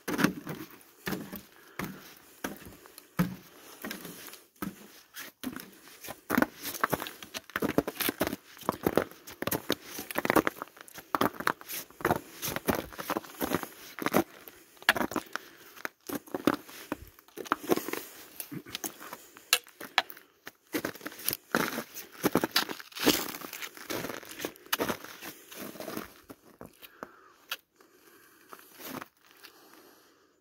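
Footsteps on crusty snow, ice and rock: a run of irregular crunches and scuffs that thins out in the last few seconds.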